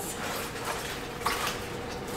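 Soft rustling and handling noise as a wire is pulled free of plant leaves on a vertical tower garden, with two brief rustles.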